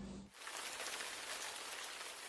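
Shower spray running: a steady hiss of falling water that starts about a third of a second in.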